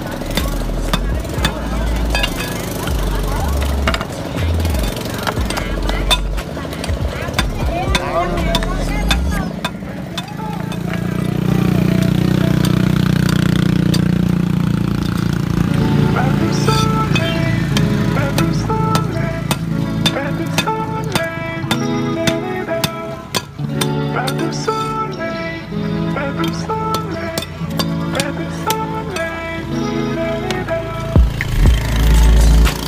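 A cleaver knocks and chops at rock oyster shells on a stone block, in a run of sharp, irregular knocks. Background music plays along, plainest in the second half.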